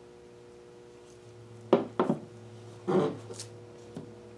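Knocks from a stretched canvas's wooden frame bumping the plastic-covered table as it is tilted: two sharp knocks close together, then a duller bump about a second later and a small tick near the end, over a faint steady hum.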